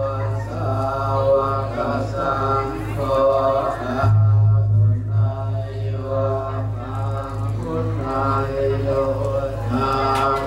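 Buddhist chanting by voices in a steady, even recitation, phrase after phrase. Underneath runs a loud low hum that pulses in places and turns steady about four seconds in.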